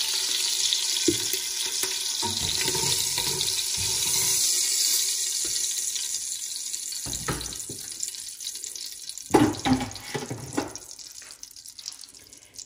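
Olive oil and butter sizzling in a hot stainless-steel pot after searing beef short ribs: a steady hiss that gradually dies down over the second half. A few knocks come from tongs lifting the ribs out.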